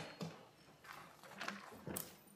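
Quiet room tone with a few faint, short knocks or clicks spread across the pause.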